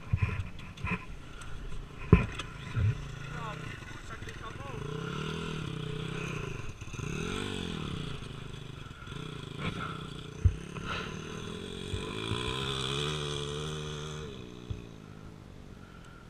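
A dirt bike's engine some way off, its pitch rising and falling as it is revved up and down while riding around the track, from about four seconds in until shortly before the end. A few sharp knocks come in the first three seconds.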